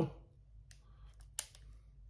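A few faint clicks and one sharper click about one and a half seconds in, from a Pentax MG 35 mm film SLR being handled as its dial is turned to auto.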